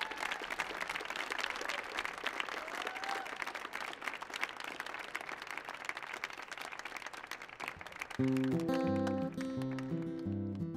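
Audience applauding, with a couple of whoops. About eight seconds in, strummed acoustic guitar chords start and become the loudest sound.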